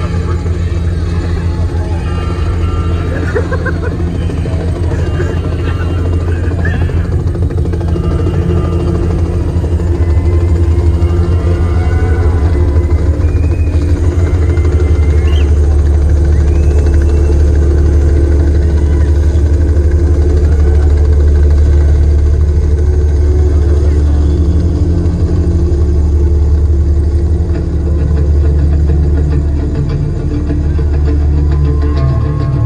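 Helicopter sound effect played loud through the concert PA, a steady low rumble, with crowd voices and shouts over it.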